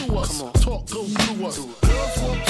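Hip hop track from a 2000s throwback mix playing: a rapped vocal over a drum beat.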